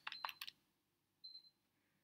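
Near silence, with a few faint clicks in the first half second, typical of a stylus tapping on a tablet screen while writing digits. A brief faint high tone comes just past a second in.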